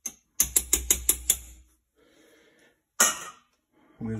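Metal kitchen tongs clicking against a glass jar: a quick run of about six sharp clicks, then a single louder clack about three seconds in.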